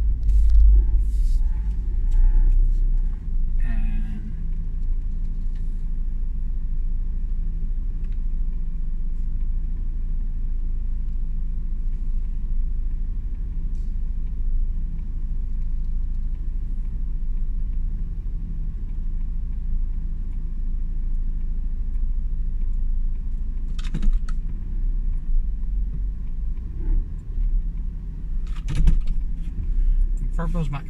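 Steady low rumble of a car heard from inside its cabin, with a few brief clicks and knocks now and then.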